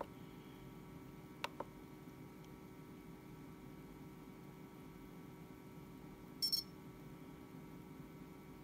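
FrSky Horus radio transmitter in use over a faint steady hum: a click at the start and two quick clicks about a second and a half in as its buttons are pressed, then one short high beep from the radio about six and a half seconds in as the settings finish saving.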